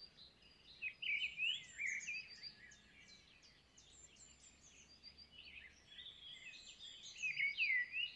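Wild birds chirping and singing, many short notes and quick rising and falling phrases overlapping, over a faint steady background hiss.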